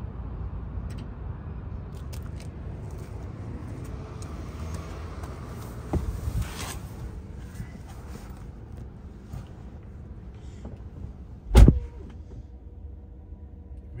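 Low rumble of handling and movement noise with scattered knocks and a rustle, then a single loud thump about three quarters of the way through.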